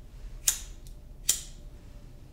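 Two sharp clicks, a little under a second apart, from hands working small connectors and wires in a motorcycle headlight bucket.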